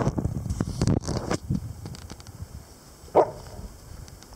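Dogs scuffling in grass over a bone, with rustling and knocks in the first second and a half, then one short bark about three seconds in.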